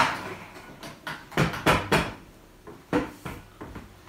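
Metal tubes of a clothes-rack frame knocking and clacking as the pieces are handled and fitted together: a sharp knock at the start, three quick knocks about a second and a half in, and another about three seconds in.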